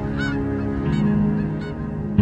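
A flock of geese honking in flight, with about three separate honks, over steady sustained background music.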